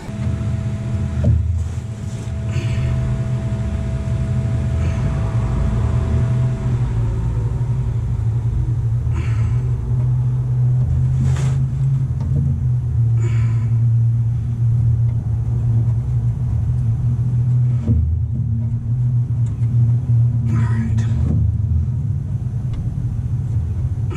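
A steady low mechanical rumble with a few short metallic clinks over it, a handful of times, as a wrench works on hose fittings under the bus.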